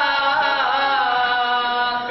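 A male voice chanting a noha, a Shia mourning lament, into a microphone, holding one long sung note that dips slightly in pitch.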